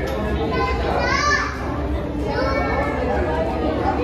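Children's voices and crowd chatter, including a high rising-and-falling child's cry about a second in, over a steady low hum.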